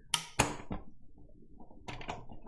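Hard clicks and knocks of craft items being moved and set down around a manual die-cutting machine as it is readied to crank: two sharp knocks close together at the start, low handling rustle, then another knock near the end.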